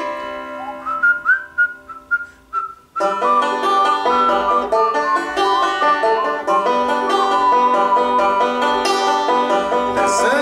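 Banjo playing an instrumental solo over G and D chords. For the first three seconds a whistled melody of short rising notes sounds over ringing chords. About three seconds in, busy banjo picking and strumming come in and carry on.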